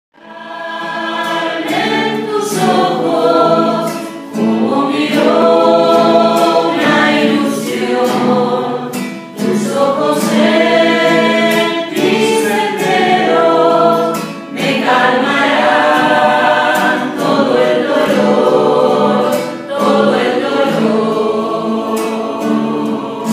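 A small amateur group of men's and women's voices singing a devotional song together, with an acoustic guitar strummed along in a steady rhythm.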